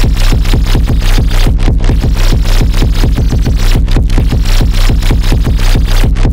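Instrumental section of an electronic song: a fast, dense run of drum hits over a loud, heavy bass line, with no vocals.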